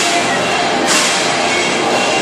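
Loud live rock band playing as one dense wall of sound, with drum-kit crashes about a second apart.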